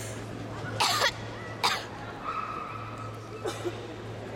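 Two short coughs about a second apart, followed by a briefly held higher tone, over a steady low hum.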